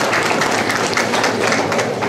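Many people applauding, a dense patter of hand claps.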